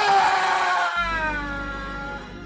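A woman's drawn-out scream sound effect, sliding slowly down in pitch and fading over two seconds, with a low music bed starting under it about a second in.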